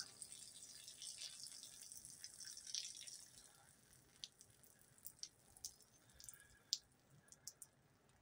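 Near silence: faint outdoor room tone, with a few scattered faint ticks in the second half.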